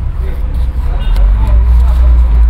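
A loud low rumble that grows louder about a second in, with faint voices above it.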